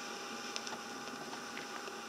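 Vinyl LP surface noise as the stylus plays the blank groove after the recording ends: a faint steady hiss with a thin hum and a few scattered crackles.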